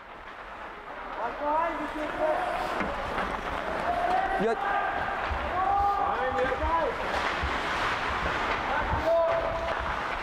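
Several voices shouting and yelling without clear words during an ice hockey game, louder after about a second, with scattered knocks of sticks and puck.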